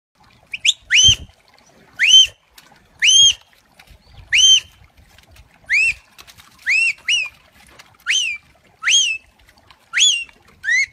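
A sheepdog handler's whistle commands: about ten short notes, each sweeping sharply up and then levelling off, repeated roughly once a second.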